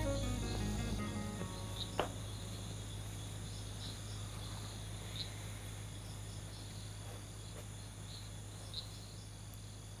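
Crickets chirping faintly in a night ambience, short chirps every second or so, over a steady low hum. A single sharp click about two seconds in.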